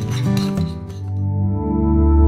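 A few clinks of a spoon against a ceramic bowl in the first half-second, then soft ambient music with long held notes swells in and takes over.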